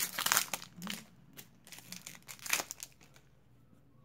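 Plastic wrapper of a 1991 Stadium Club baseball card pack crinkling and tearing as it is opened by hand, densest in the first second, then a few scattered crackles that die away.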